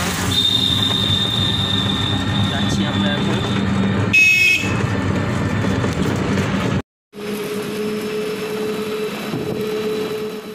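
Riding inside a moving toto (battery e-rickshaw): steady road rumble and body rattle, with a short high beep about four seconds in. The sound cuts out for a moment near seven seconds, then carries on with a steady hum.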